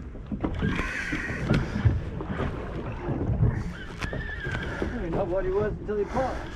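Wind on the microphone and water against a small boat's hull, a steady rumble with a few sharp clicks, while a spinning reel is cranked to bring in a fish. Near the end comes a short wavering pitched sound.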